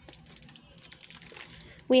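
Faint crinkling and light clicks of a Pokémon booster-pack foil wrapper and its trading cards being handled.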